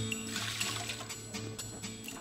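Liquid pouring into a large aluminium stockpot, mostly in the first second and a half, over steady background music.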